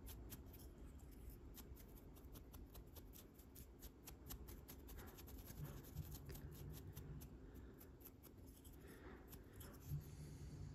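Faint, rapid scratchy ticks of a wide, soft-bristled brush being dry-brushed back and forth across a tiny 1/285-scale cast-metal boat model.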